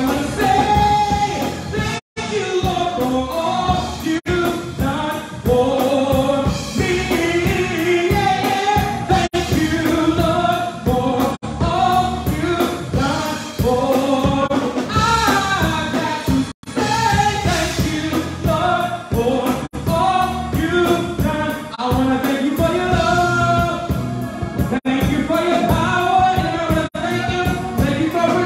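A man singing a gospel song into a handheld microphone over instrumental backing. The sound drops out briefly several times.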